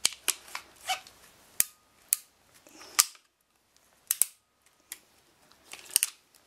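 Sharp clicks and snaps of a hand PEX press tool as its jaws are worked and closed on a Viega press fitting: about nine separate clicks spread over the few seconds, the loudest about three seconds in.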